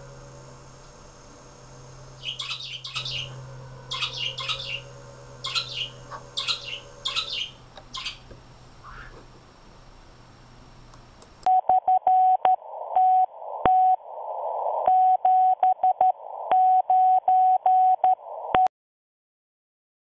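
A low steady hum with a run of short high chirps, then, about eleven and a half seconds in, a loud beeping tone keyed on and off in short and long stretches over static, like Morse code. It cuts off abruptly about a second before the end.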